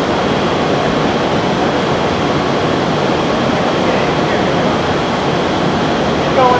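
Steady, loud rushing of air in a full-scale automotive wind tunnel running with a rear wing in the test section, an even roar without pauses or changes.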